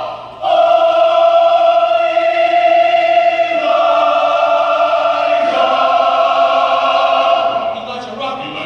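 Mixed-voice choir singing long, sustained chords. The sound breaks off briefly right at the start, then the chord changes twice and thins out near the end.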